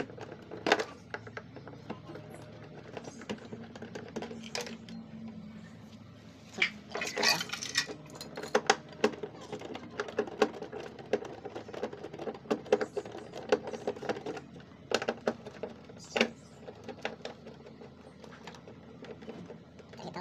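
Scattered clicks, taps and small knocks of a screwdriver and fingers working at a freezer compressor's plastic terminal cover and relay socket, prising the electrical socket off the compressor terminals so it won't be burned during brazing. The clicks come irregularly, with a busier run a third of the way through.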